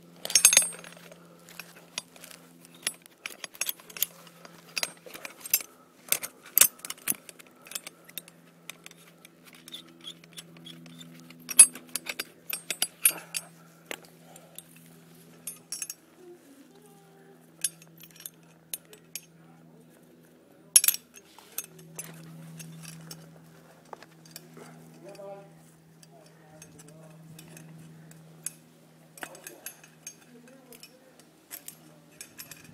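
Metal carabiners and rope-rescue hardware clinking and clattering as they are handled. The sharp clinks are irregular, loudest just after the start and again about 12 and 21 seconds in.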